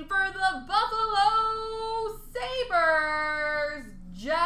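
A high voice singing long held notes in three phrases without instruments, the last note sliding down near the end.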